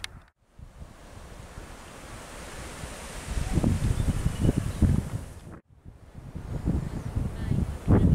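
Wind buffeting the microphone outdoors: a rumbling, gusty noise that grows stronger in the second half. It drops out briefly twice, just after the start and again late on, where the shots are cut.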